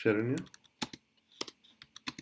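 Typing on a computer keyboard: a handful of separate keystrokes, unevenly spaced, entering a line of code.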